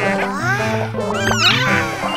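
Bouncy children's background music with high, squeaky cartoon baby-dinosaur cries over it: several short calls that rise and fall in pitch.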